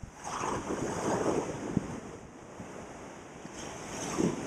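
Ocean surf: a wave breaks and washes up the beach, swelling about a quarter second in and fading over the next couple of seconds, then another wash rises near the end.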